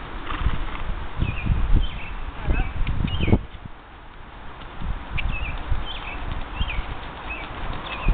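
Dull hoofbeats of a horse being ridden on soft sand footing, with a quieter spell in the middle. A small bird chirps in short repeated calls over the top.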